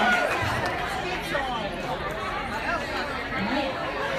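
Audience chatter: several voices talking over one another in a crowded room.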